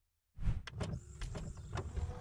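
Logo-animation sound effect: after a moment of dead silence it starts suddenly with a low thump, then a mechanical sliding whir broken by a few sharp clicks, with a thin high whine in its second half.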